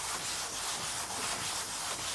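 A hand scrub brush scrubbing wet, soapy kimono cloth flat on a washing bench in quick, repeated back-and-forth strokes: the hand-washing stage of araibari.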